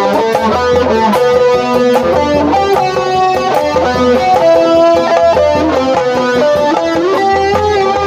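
Live street-band music: a melody instrument carries a dangdut tune in held notes over drumming, with deep, regularly spaced drum strokes from a large barrel drum struck with a padded mallet, plus hand drums and cymbal hits.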